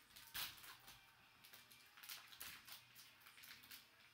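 Faint crinkling and crackling of a trading-card pack's paper wrapper and plastic wrap being torn open by hand, a run of short crackles with the loudest about half a second in.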